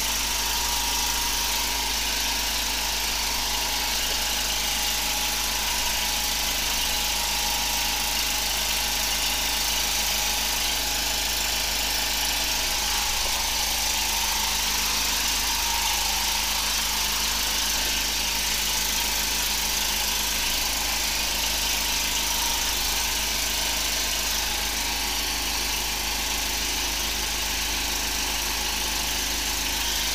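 High-pressure drain jetter running steadily: its engine-driven pump drones on without a break while water jets through the hose into the drain, with a strong hiss and a steady high whine over it.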